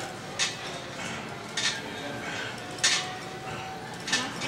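Iron weight plates clinking against each other on a barbell: three sharp metallic clinks a little over a second apart.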